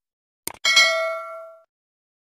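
Subscribe-button animation sound effect: a quick double mouse click about half a second in, then a bright bell ding that rings for about a second and fades away.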